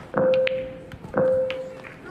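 Two electronic beeps of the same steady pitch, about a second apart, each held for over half a second: the Snooker Shoot Out shot clock counting down. A few faint clicks of snooker balls sound between them.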